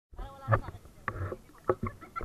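Seawater sloshing and splashing against a camera held at the water's surface, in several sudden surges about half a second apart, with a voice near the start.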